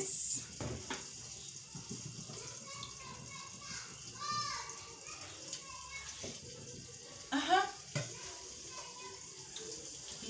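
Quiet kitchen background with a soft steady hiss, broken twice by a brief voice and by a few light knocks.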